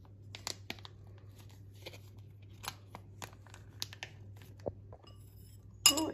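Soft plastic mustard pouch crinkling in scattered faint crackles as it is squeezed by hand, with a sharper click near the end.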